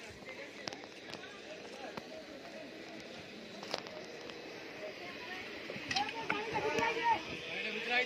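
Overlapping voices of passengers crowding onto a train, with one sharp knock near the middle. The voices grow louder in the last two seconds.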